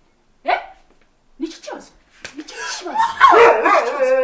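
A person's raised, distressed voice: two short sharp cries in the first two seconds, then a long, loud wailing cry building from about two seconds in.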